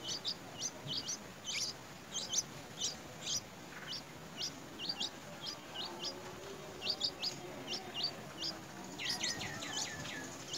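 Bulbul nestlings cheeping at the nest as they are fed: short, high, downward-sweeping chirps, about three a second, with a quick run of falling notes near the end.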